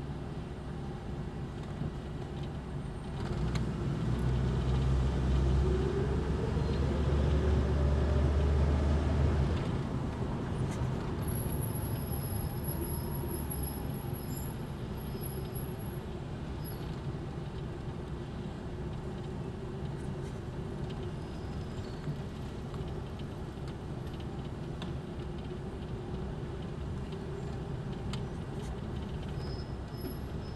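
A 1977 Plymouth Fury's engine idling steadily while the car stands in a traffic queue. About three seconds in, a louder low rumble with a slowly rising tone comes in, then falls away near the ten-second mark.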